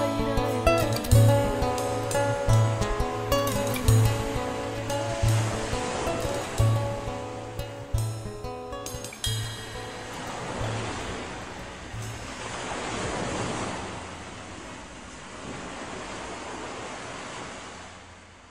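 The song's instrumental outro, with guitars over a steady bass-drum beat about every 1.3 s, fades out over the first dozen seconds. It gives way to the steady rush of ocean surf breaking on a beach, which carries on alone and begins to fade near the end.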